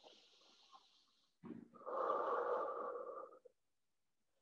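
A woman breathing deeply: a faint airy inhale at the start, then a longer, louder breath out of about a second and a half, starting around two seconds in.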